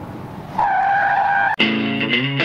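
A car's engine rumble, then a steady tire squeal from about half a second in that lasts about a second and cuts off abruptly. A distorted electric guitar chord crashes in right after.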